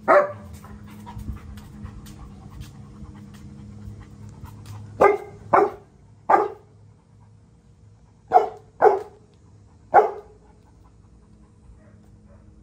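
A dog barking in seven short single barks: one at the very start, three in quick succession about five to six and a half seconds in, and three more between about eight and ten seconds, with a dog panting in between.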